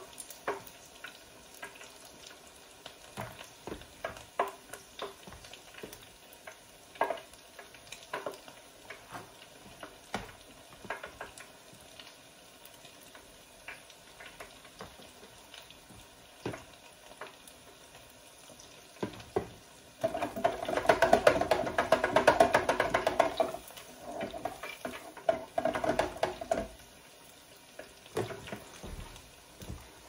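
A spoon clicking and scraping against a bowl of fish-ball paste, over the faint sizzle of oil in an electric deep fryer. About twenty seconds in comes a louder, denser run of sound lasting a few seconds, with a shorter one just after.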